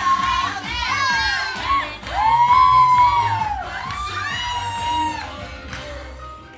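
Dance music with a steady beat, with children's high voices and a crowd shouting and cheering over it, loudest a couple of seconds in.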